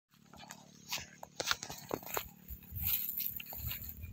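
Irregular crunching and rustling of footsteps through dry grass and brush, with low wind rumble on the microphone building near the end.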